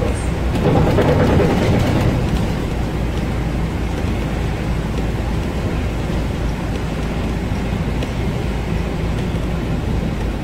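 Volvo 7000A articulated city bus under way on a wet road, heard from the driver's cab: a steady low running rumble with tyre and road noise. It is a little louder for a couple of seconds near the start, then runs evenly.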